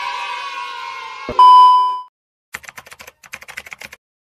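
Edited-in sound effects: the tail of a cheering "yay" effect fades out, then a loud single beep comes in with a click about a second and a half in. After a brief silence a rapid run of sharp clicks follows.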